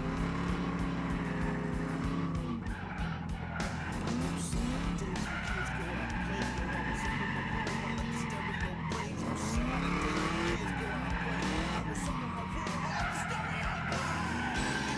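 A V8-swapped Mazda RX-7 FD heard from inside its cabin while drifting: the V8 revs up and down repeatedly as the throttle is worked, with the rear tires squealing and skidding.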